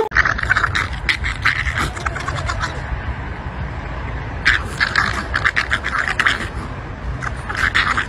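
Two French bulldogs play-wrestling, making rapid noisy grunts in three spells: at the start, midway and near the end.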